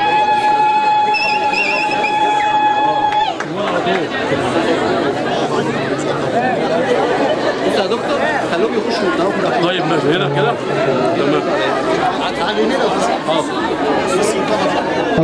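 Audience chatter, many voices talking at once. For the first three seconds a steady high tone sounds over it, then cuts off suddenly.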